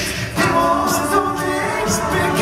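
Male a cappella group singing live into microphones, several voices holding sustained chords in close harmony after a brief break about a third of a second in.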